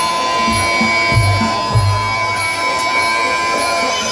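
Live traditional fight-ring music: a shrill double-reed pipe holds one long note over low drum beats. A crowd murmurs underneath.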